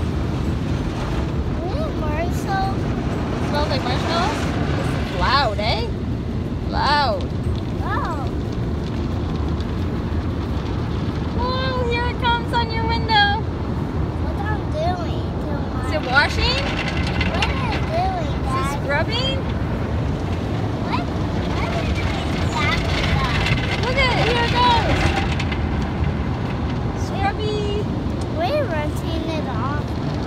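Automatic car wash heard from inside the car: a steady rush of water spray and cloth brushes rubbing over the windows and body.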